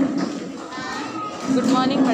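Chatter of many voices, young people talking over one another in a large hall, with one voice louder near the end.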